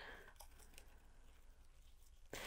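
Near silence: room tone, with faint handling noise from jute twine being knotted around a wooden plank.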